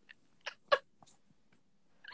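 A few short, high, squeaky gasps of breathless laughter, the sound of people laughing hard, coming over a phone video call.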